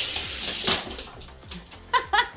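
Hot Wheels diecast cars running down an orange plastic track in a rushing, rattling roll that fades after the start, with several sharp clattering knocks. A dog makes a short whine at the very end.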